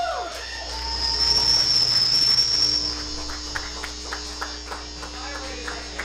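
Amplifier feedback on a band's stage: a high, steady whistling tone starting about a second in and lasting under two seconds. A lower steady hum then takes over, with scattered light clicks.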